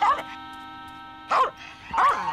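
Cartoon background music holding one steady chord, broken by two short cartoon vocal sounds, one at the start and one a little over a second in.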